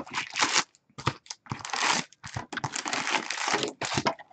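Wrapping on a trading-card hobby box being torn and crumpled: a string of irregular crackly rips and rustles, with a brief pause about a second in.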